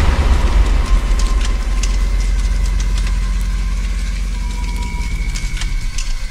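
Deep, low rumbling drone of a dark ambient soundtrack, slowly fading. Faint thin tones and scattered faint clicks sit above it.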